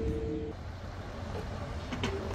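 A low, steady engine rumble. A held musical tone stops about half a second in.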